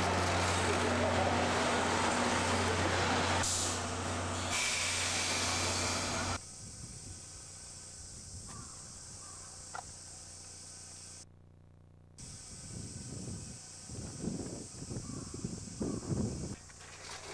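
JNR Class C56 steam locomotive standing at close range, hissing steam steadily over a low hum, the hiss turning louder and sharper about four seconds in. About six seconds in the sound drops suddenly to a faint hum, with some low rumbling near the end.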